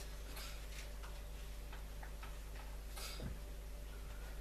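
Quiet room with a steady low hum and a few faint rustles and clicks of Bible pages being turned, the clearest about three seconds in.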